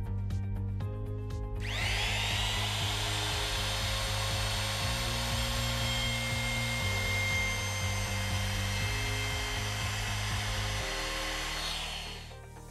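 Bosch GKF 600 trim router switched on about a second and a half in, its motor whine rising to full speed. It then runs steadily at a high pitch while routing a groove along a softwood batten, and winds down near the end. Background music plays underneath.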